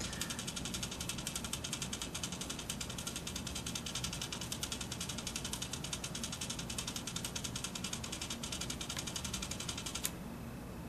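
Hitec HSR-1425CR continuous-rotation servo spinning a GoPro camera mount: a steady gear whir made of rapid, even ticks. It cuts off near the end as the servo stops.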